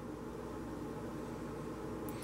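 Quiet room tone: a steady low hum and hiss with no distinct sounds.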